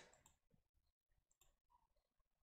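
Near silence, with a few faint computer mouse clicks.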